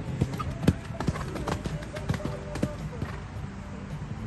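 Hoofbeats of a grey horse cantering close past on sand arena footing: a run of sharp thuds in the first second and a half, then fewer as it moves away.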